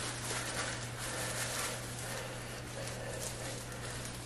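Faint, irregular soft rustling and dabbing of gloved hands working relaxer cream through hair, over a steady low electrical hum.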